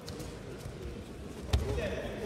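A judoka thrown onto the tatami mat: one heavy thud about one and a half seconds in as the body lands.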